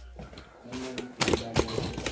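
Sharp knocks on an aluminium stepladder as it is climbed, the two loudest a little over a second in, with a faint voice underneath.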